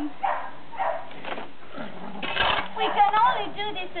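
Dogs whining with high, wavering cries that rise and fall, mixed with a person's low voice. A dull thump about two and a half seconds in, most likely the tool striking the frozen ground.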